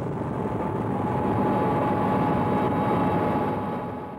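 Military helicopter gunship in flight, heard from aboard: a steady din of engine and rotor with a steady whine running through it, easing off near the end.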